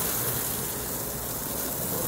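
Spray from a garden hose with no nozzle spattering steadily against a car's side panels and windows.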